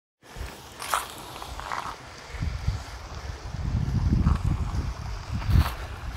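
Gusting wind buffeting a handheld phone's microphone in an uneven low rumble, with a few sharp handling clicks and rustles from fingers on the phone.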